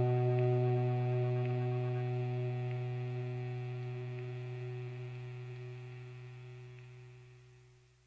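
The song's final note, a sustained distorted electric guitar tone, ringing out and fading slowly away until it dies near the end.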